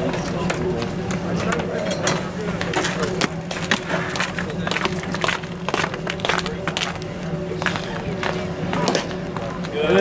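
Indistinct spectator chatter at an outdoor baseball game, with scattered short clicks and knocks and a steady low hum underneath.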